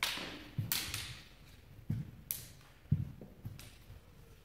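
Several sharp clacks of sparring naginata, mixed with low thuds of bare feet on a hardwood floor; the loudest thud comes about three seconds in.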